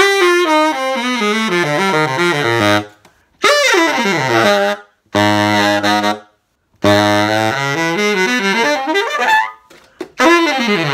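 Original Selmer Balanced Action tenor saxophone played in four short phrases: quick runs falling into the low register, a held low note about halfway through, and a final run that turns upward near the end. It is played as found, on old original pads without resonators.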